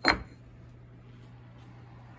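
A machined aluminium touch plate set down on a wooden surface, giving a single sharp knock just after the start, followed by a steady low hum.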